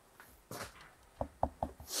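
Handling noise as a large speaker driver is worked into its cabinet: a soft rub, then three quick light knocks of the metal frame against the box, and a short rub near the end.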